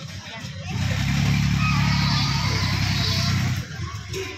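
A steady low mechanical drone, like an engine or generator running, with voices talking in the background. It gets louder about a second in and eases slightly near the end.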